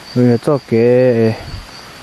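A man speaking over a steady, high-pitched drone of insects that runs unbroken beneath his words.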